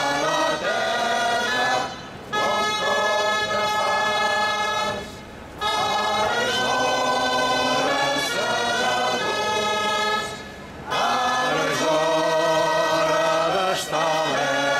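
Many voices singing a song together in long sustained phrases, with short breaks between phrases about two, five and ten seconds in.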